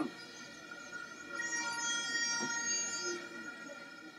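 Distant crowd background with a plastic stadium horn (vuvuzela) blown, a held tone of about two seconds near the middle.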